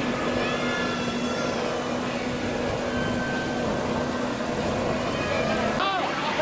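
Amusement park background sound: a steady low mechanical hum with distant voices over it. The hum stops near the end.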